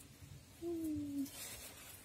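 A short hummed tone, like a person's closed-mouth "mm", held for about two-thirds of a second and falling slightly in pitch, followed by a faint rustle.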